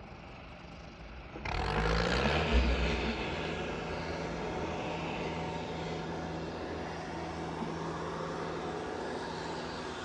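Skagit BU-199 yarder's diesel engine revving up about one and a half seconds in, its pitch climbing, then running steady under load as it pulls the turn of logs up the skyline.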